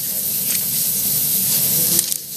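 Steady hiss of background noise on the audio feed, an even rush that carries on at the same level under the surrounding speech.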